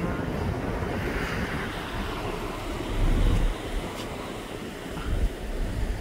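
Wind buffeting the microphone on a moving ferry's open deck, over a steady rush of water from the ship's wake, with heavier gusts about three seconds in and again near the end.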